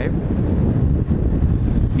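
Steady wind rush on the microphone mixed with the Yamaha R1's inline-four engine and road noise while riding at freeway speed.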